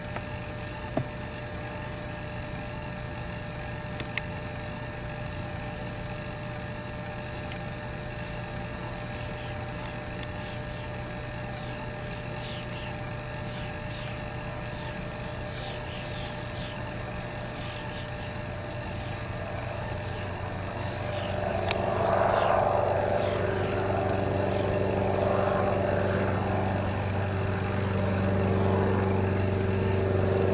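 Light single-engine piston airplane's engine running steadily, then growing clearly louder and fuller about two-thirds of the way through.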